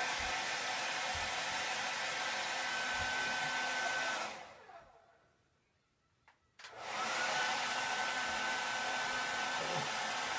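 Hair dryer running with a steady whine over the rush of air. About four seconds in it is switched off and its motor winds down. After a click, it is switched back on about two seconds later and spins back up to the same steady whine.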